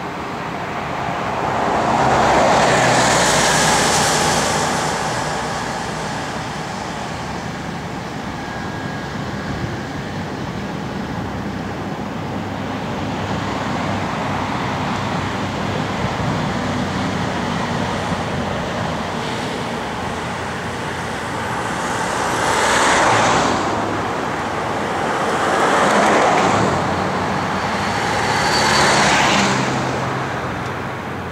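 Road traffic: cars passing close by on the road, each a broad swell of tyre and engine noise that rises and fades, one a few seconds in and three more about three seconds apart near the end, over a steady traffic rumble.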